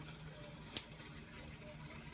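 A hand-cranked Van de Graaff generator throws a single sharp spark snap across the small gap between its dome and the grounded discharge wand, about a second in. These small, repeating sparks show that charge is starting to build on the rollers after a cold start, before a visible arc forms.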